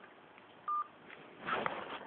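A single short electronic telephone beep at the end of a call, heard through the narrow sound of a phone line. About a second later comes a brief scuffle of noise.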